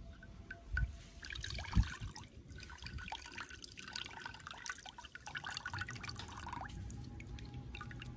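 Liquid squeezed by hand from a cloth bundle, dripping and trickling into a terracotta bowl as many small drips. Two low thumps come within the first two seconds, the second the loudest.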